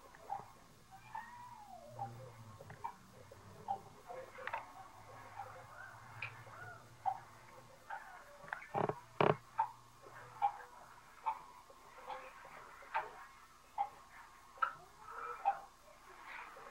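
Soft, irregular taps and clicks of a baby's fingers patting a tabletop while popping bubbles, with faint baby coos; two sharper knocks come about nine seconds in.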